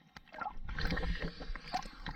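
Water gurgling and sloshing around an action camera as it bobs just under and back through the water's surface. Nearly silent at first, it builds after about half a second into a steady wash with small clicks and splashes.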